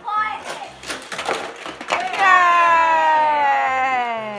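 A child's voice holds one long, slowly falling cry from about two seconds in. Before it come a few sharp clicks of plastic toy pieces being handled. A low, steady beat of background music runs underneath.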